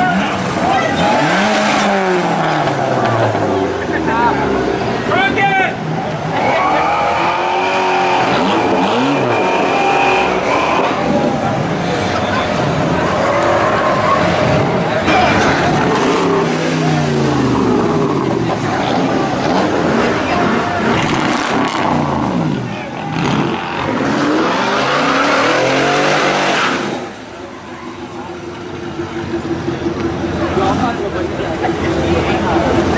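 Cars and trucks accelerating away one after another, their engines revving up and dropping in pitch through gear changes. A high, steady squeal runs for a few seconds about seven seconds in, and the engine noise falls away near the end.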